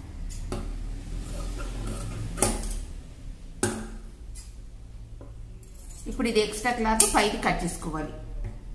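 A few sharp clinks and taps on a tabletop, spread over the first half, while cloth and a paper pattern are handled and laid flat.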